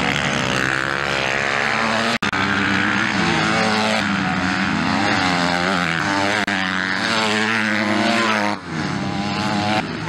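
Dirt bike engines racing on a dirt track, the pitch climbing and falling over and over as riders rev through the gears and back off for corners. There is a brief sudden break about two seconds in and another near the end.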